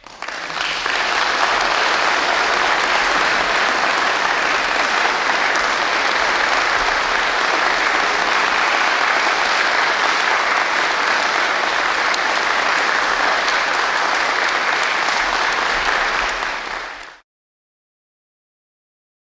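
Audience applauding steadily right after the last sung note, an even clapping that fades away and stops about a second before the end.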